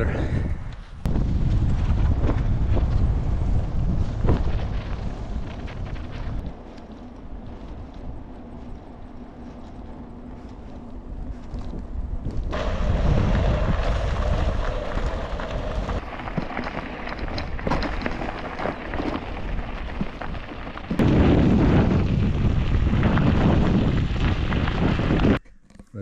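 Wind buffeting an action camera's microphone while cycling, with road rumble from the bike. It eases off for several seconds, then comes back loud and cuts off abruptly near the end.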